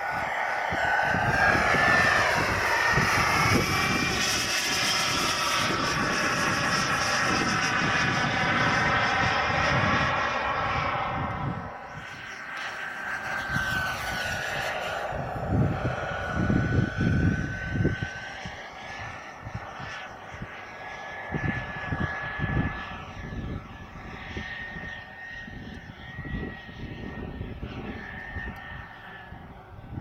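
Small gas-turbine engine of an RC model jet, a steady whine over a rush of jet noise that climbs in pitch in the first few seconds and stays loud until about 11 seconds in. After that it drops away and turns fainter and more distant, its whine wavering slowly, with gusts of wind buffeting the microphone.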